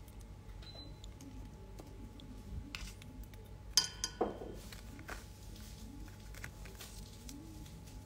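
Metal tweezers working a clear plastic nail-decal sheet: scattered light clicks and crackles, with a sharp clink a little under four seconds in.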